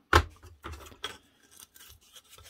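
A sharp wooden knock just after the start, then light scraping and clicking as thin laser-cut plywood pieces are handled and the cut plywood sheet is lifted off the laser's metal honeycomb bed.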